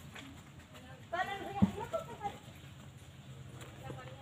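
A brief stretch of indistinct voices talking, with a single sharp click in the middle of it, over a faint steady low hum.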